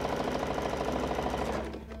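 Electric domestic sewing machine stitching a seam through layered fabric squares, running at a steady rapid rhythm. It stops shortly before the end.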